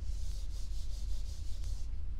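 A whiteboard eraser wiping dry-erase marker off a whiteboard: a rapid series of rubbing strokes with a hissy sound, stopping just before the end.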